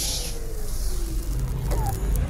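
Steady low rumble of a background ambience bed under the podcast, with faint hiss above it and a faint tone sliding slowly down in pitch.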